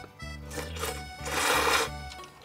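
A person slurping noodles: a short slurp just before a second in, then a louder, longer slurp of about half a second, over background music.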